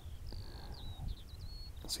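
A bird singing a quick series of short, high whistled notes and slurs, over a faint low rumble.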